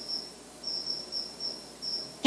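Insect chirping: a run of short, high-pitched chirps repeated at an even pace, about three to four a second, through a pause in the talk.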